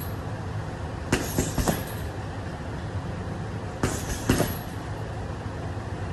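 Boxing gloves punching a round leather Morgan hanging bag in short combinations: three quick blows about a second in, then two more a little before halfway, over a steady low rumble.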